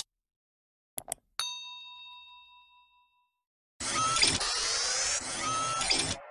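Sound effects of an animated subscribe button: two quick clicks about a second in, then a notification-bell ding that rings out and fades over about two seconds. From about four seconds in comes a loud hissing sound effect with short rising whistles in it.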